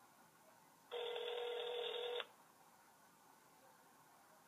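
Telephone ringback tone played through a mobile phone's speaker: one steady ring of just over a second, starting about a second in, with the thin, narrow sound of a phone line.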